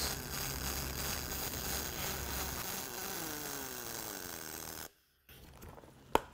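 Pulsed MIG welding arc on aluminum plate during the hot pass, a steady buzzing hiss. It cuts off abruptly about five seconds in.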